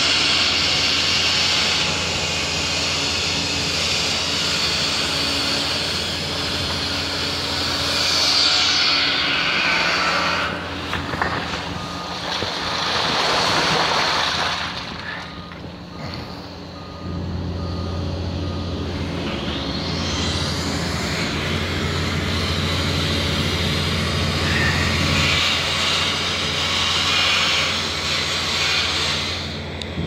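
Hitachi excavator's diesel engine running steadily as its long-reach boom and arm are raised and lowered hydraulically, with a hiss that swells and fades over it. A faint repeated beep sounds for a few seconds midway.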